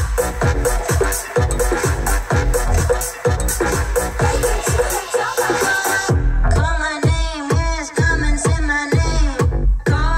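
Electronic dance music playing over a Hyundai Genesis's aftermarket sound-quality system run through a Helix DSP, with a steady beat of about two kicks a second. About six seconds in, the high cymbal layer drops out and a sliding, pitched melodic line comes in over the beat.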